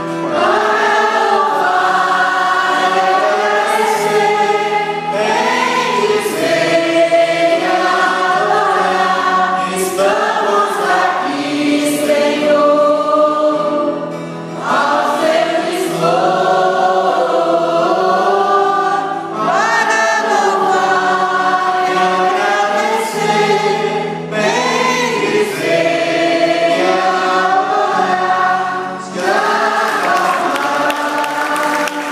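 A Catholic congregation singing a Portuguese hymn together in phrases, with guitar accompaniment.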